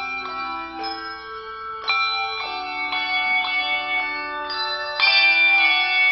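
Handbell choir playing: chords of struck handbells ringing and overlapping one another, growing louder about two seconds in and again near the end.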